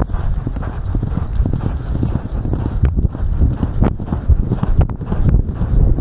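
A horse galloping on grass turf, its hoofbeats thudding in a fast, continuous rhythm, heard up close from the saddle.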